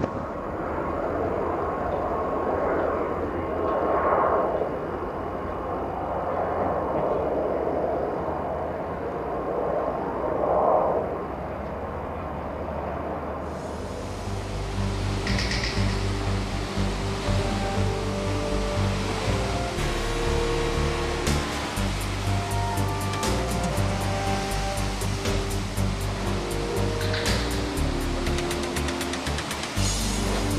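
Rushing wind and sea noise that swells twice. About halfway through, background music with a steady beat comes in over waves breaking against the shore.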